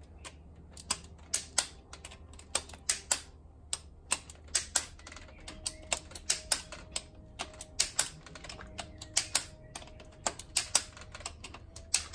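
Ratchet of a torque wrench clicking in short, irregular runs as the injector rocker bolts are worked down one after another.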